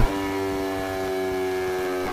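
A steady drone of several sustained tones held at one pitch, with no rise or fall, used as a suspense backing sound.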